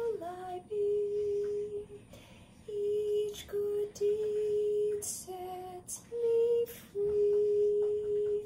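A woman softly singing a slow, simple tune without words in clear, pure sustained notes, mostly on one repeated pitch with brief steps up and down and short pauses between phrases.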